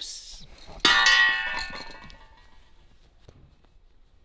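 A single metallic clang about a second in, ringing on and fading away over about a second and a half.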